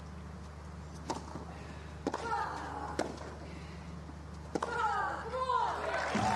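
Tennis rally on grass: sharp racket strikes on the ball about a second apart, some followed by a player's voiced grunt or shout, over a steady low hum.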